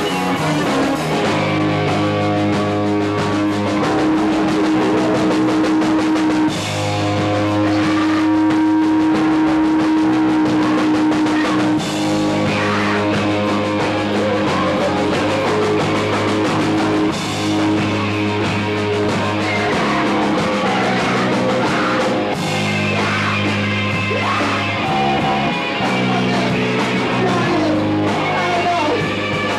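A rock band playing live: electric bass and guitar over a drum kit, the bass holding long notes that change every few seconds.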